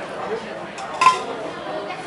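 Long metal kebab skewer clinking once with a short metallic ring about a second in, as it is handled over a plate, against a steady background of other diners' voices.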